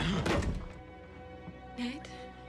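Film score with held, steady string-like tones; the first half second carries a loud, brief noisy thud. Near the end comes a short rising voice sound, like a gasp or moan.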